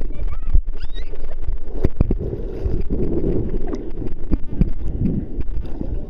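Sea water sloshing and splashing right against the microphone, with a steady low rumble and a run of small clicks and crackles.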